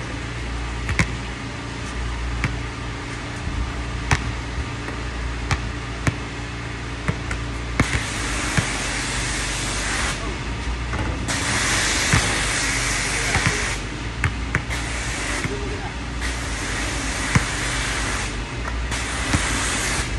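A basketball knocking on an outdoor hard court and against the hoop, a sharp knock every second or two, over a steady low hum. In the second half, several stretches of loud hiss switch on and off abruptly.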